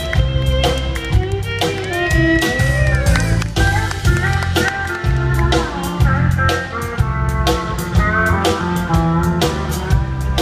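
A live country band playing an instrumental passage with no singing: guitars, fiddle and drum kit with a steady beat, with sliding lead notes a couple of seconds in.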